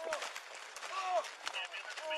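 Faint voices talking at a distance, with scattered crunches of boots on packed snow and scrapes of clothing rubbing over a body-worn camera's microphone.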